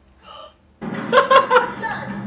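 Laughter in short, choppy bursts, starting just under a second in after a brief quiet moment.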